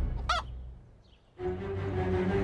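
A rooster gives one short squawk about a quarter second in, over the fading tail of a musical hit. Music comes back in a little past the middle.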